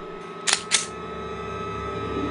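Two sharp mechanical clicks about a quarter second apart, over a soft sustained drone of trailer music with one held high tone.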